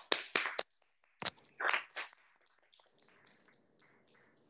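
A few people clapping briefly: a quick run of claps at the start, then a few scattered ones that trail off about two seconds in.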